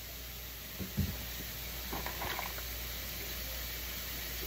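Steady background hiss with a soft thump about a second in, as costume jewelry is handled and set down.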